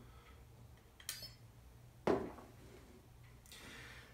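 Small plastic clicks as Edison educational robots are handled and switched on, with a sharp knock about two seconds in as one is set down on a wooden table.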